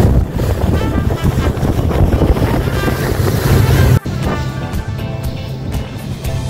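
Wind buffeting the microphone and water rushing and spraying along the hull of an inflatable boat running fast over the sea. About four seconds in, the sound cuts sharply to a quieter passage with music over it.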